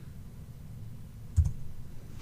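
A single sharp keystroke on a computer keyboard, typing the multiplication sign into a spreadsheet formula, over a low steady hum.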